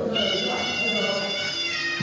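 Thai oboe (pi java) sounding one long high note that steps down in pitch near the end: the start of the traditional Muay Thai accompaniment music.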